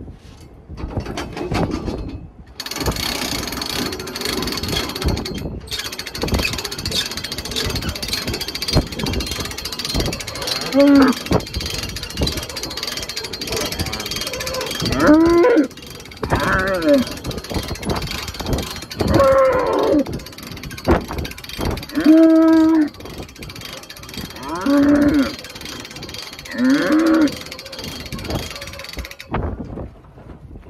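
Cattle bawling: about seven short calls, each under a second and rising then falling in pitch, starting about ten seconds in, over a steady rushing background noise.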